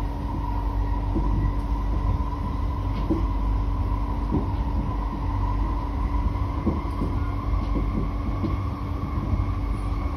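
Cabin running noise of an SMRT C151B metro train in motion: a steady low rumble with a constant whine, and scattered light clicks and knocks from the running gear.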